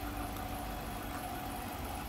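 A 2016 Dodge Durango R/T's 5.7-liter Hemi V8 idling steadily, heard from the open engine bay, with a faint steady whine over the low hum.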